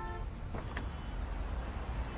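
Low, steady rumble of city street traffic, with a short car-horn toot that ends just after the start and a faint click about three quarters of a second in.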